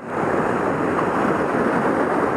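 Ocean surf breaking and washing over a rocky shoreline: a steady rushing wash.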